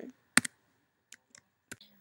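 Computer keyboard and mouse clicks as a value is typed into a field: one sharp click about half a second in, then four fainter clicks in the second half.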